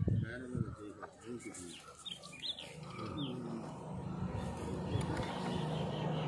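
Faint outdoor background: small birds chirping in short quick notes through the middle, over a low steady hum that grows a little in the second half.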